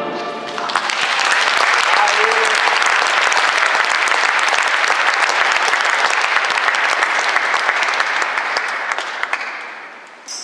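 Audience applauding: the band's last chord dies away in the first moment, then a steady dense clapping that fades out near the end.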